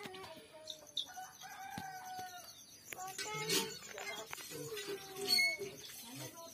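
Rooster crowing, one long drawn-out call starting about a second in, followed by shorter calls and a few scattered knocks.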